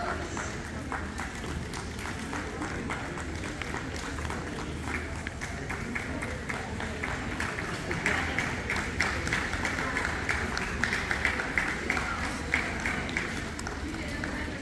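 Spectators clapping under a murmur of crowd chatter, the applause picking up and growing louder about eight seconds in, then thinning out shortly before the end.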